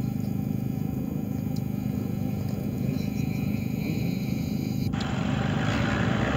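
A vehicle engine running steadily, a low even hum. Near the end, a sudden rise in hiss joins it.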